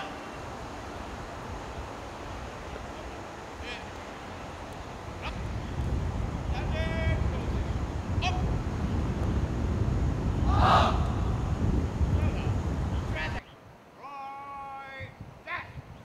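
Outdoor ambience: distant voices calling out a few times over a low rumble that swells after about five seconds. The sound drops abruptly to a quieter background a couple of seconds before the end.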